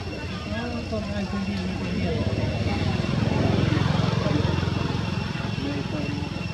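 A person speaking briefly, then the low rumble of a motor vehicle's engine building up, loudest in the middle and easing off toward the end. A faint steady high whine runs underneath.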